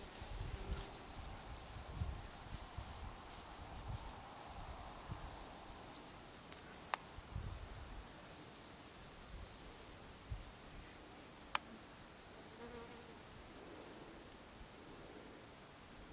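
Faint outdoor ambience of insects buzzing and chirring. Uneven low rumbling dies down after the first half, and two sharp clicks come, one near the middle and one about three-quarters of the way in.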